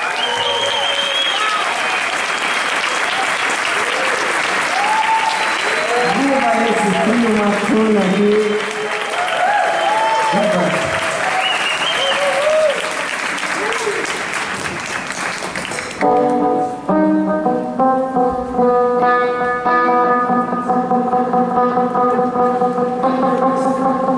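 Concert audience applauding and cheering, with whoops and shouts over the clapping. About sixteen seconds in, the band comes in abruptly with held chords over a fast, even pulse.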